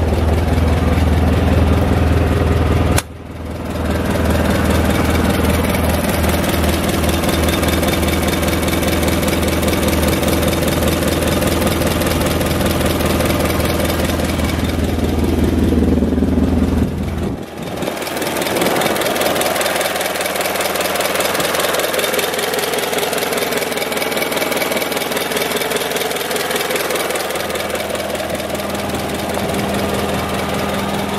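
Daewoo forklift's engine, fuelled from a propane tank, idling steadily. The level dips briefly about three seconds in, and just past the halfway point the deep low part of the sound drops away while the idle carries on.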